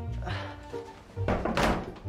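Background music with a rapid run of thuds in the second half: someone banging on a door.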